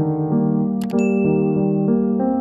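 Soft piano background music, over which a subscribe-button sound effect plays: a quick double click just before a second in, then a single bright notification-bell ding that rings out for about a second.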